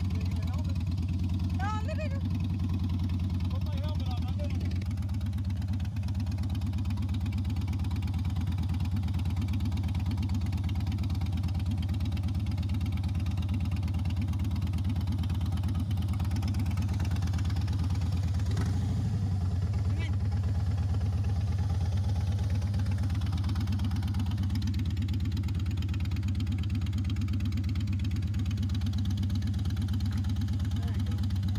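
Motorcycle engine idling steadily, with an even low pulse throughout.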